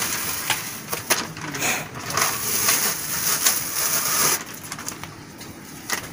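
Backing paper being peeled off a self-adhesive 3D foam brick wall panel, with the panel handled: a crackling, rustling noise with a few sharp clicks that eases off about four and a half seconds in.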